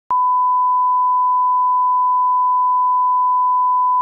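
A single steady pure tone, the 1 kHz line-up test tone that goes with colour bars at the head of a broadcast programme tape, used for setting audio levels. It starts abruptly just after the start and holds at one unchanging pitch and level.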